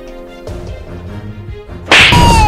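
Background music with held tones, then right at the end a sudden loud slap across the face.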